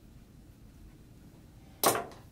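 Quiet room tone, then a single short, sharp knock or clack near the end, much louder than anything around it.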